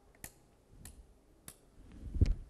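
Three faint, sharp clicks about two-thirds of a second apart in a quiet room.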